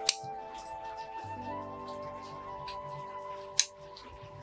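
Two sharp snips of bonsai pruning scissors cutting Zelkova twigs, one just after the start and one near the end, over soft background music.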